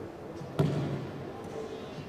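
A single sharp thud about half a second in, with a short echo dying away after it, over faint murmuring voices in the background.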